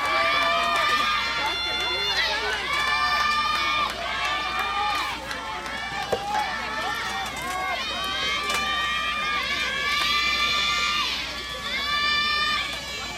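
High voices calling out in long, held, sing-song cheering shouts, one after another and overlapping. A single sharp racket-on-ball hit comes about six seconds in as a soft tennis serve is struck.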